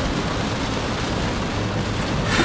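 Steady noise of heavy rain on a car's roof and windows mixed with tyre noise on a wet road, heard from inside the cabin.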